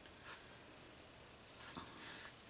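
Faint scratchy rustling with a few light ticks from fingers handling a beaded ring and drawing beading thread through its seed beads.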